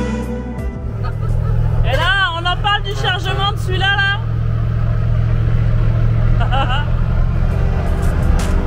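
Diesel engine of an old MAN KAT 4x4 truck running steadily under way, heard from inside the cab as a dense low rumble. Background music fades out in the first second, and a voice calls out briefly a couple of times over the engine.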